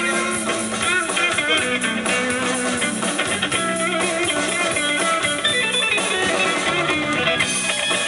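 Live rock band playing an instrumental passage: electric guitar carrying a melody line with curving, bent notes over bass guitar and a drum kit.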